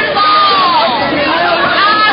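Crowd of protesters shouting and yelling over one another, many raised voices overlapping with no single clear speaker.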